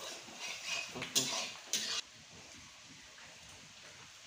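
A flat metal spatula scrapes and stirs onions frying in a black iron kadai, with several scraping strokes over sizzling oil. About halfway through the sound cuts off suddenly, leaving only a faint hiss.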